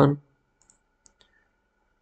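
A computer mouse clicking faintly, a few short clicks around a second in, as a tray icon is right-clicked.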